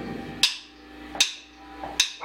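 Wooden drumsticks clicked together twice, about three-quarters of a second apart: the drummer counting the band in.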